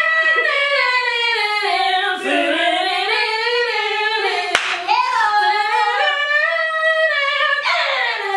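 Two women singing loudly together, unaccompanied, their voices sliding and wavering through a sustained melody. One sharp snap cuts in about halfway through.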